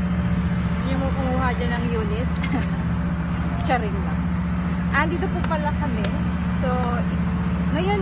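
Steady low drone of road traffic, with voices speaking faintly over it.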